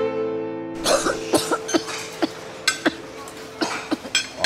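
String music that cuts off under a second in, followed by a run of short clinks and taps of cutlery on china plates at a restaurant table, over a faint held tone.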